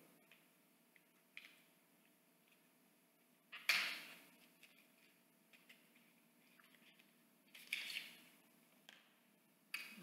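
Faint handling noises from a lip crayon being opened: a few small clicks and two short rustles, the first, a little under four seconds in, the loudest.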